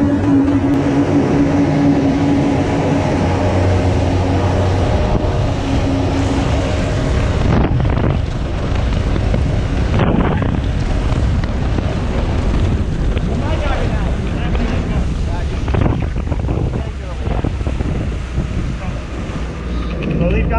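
Engine of a small Ferrari-styled speedboat running at speed on the sea, with wind buffeting the microphone and water rushing past the hull. A steady engine hum is clear for the first few seconds, then the wind and water noise take over.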